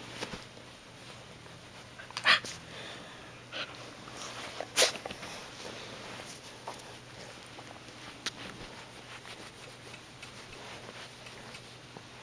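A Keeshond dog nosing right up at the microphone, making short, sharp noises. The two loudest come about two and a half seconds apart.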